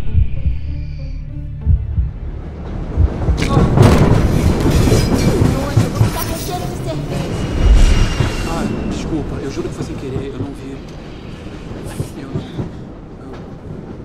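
Movie soundtrack inside a moving subway car: the car runs with a steady rumble and rattle under film-score music, and a few sharp knocks and thuds. The loudest is a low thud about eight seconds in.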